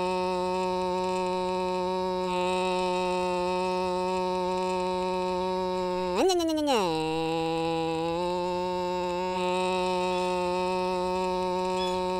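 Cartoon car engine sound effect: a steady droning hum that revs up briefly about halfway through, then drops and settles at a slightly lower pitch.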